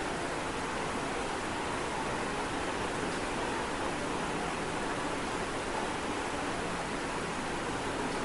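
Steady hiss of background noise, even and unchanging, with no distinct sound standing out.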